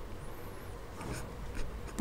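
Quiet pause holding faint room noise and a few soft scratching sounds. The loudest comes a little past halfway.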